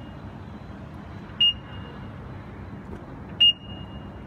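Pedestrian crossing push-button unit beeping: a short, high beep with a brief ringing tail every two seconds, twice here, the second louder. It is the crossing's audible signal while the unit shows WAIT.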